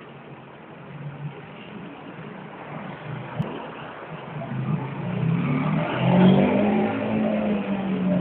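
1957 BSA 600cc motorcycle engine running, growing louder through the second half with a brief rise in revs about six seconds in.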